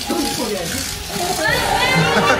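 Excited voices and high-pitched squeals of people reacting, with an exclamation near the end.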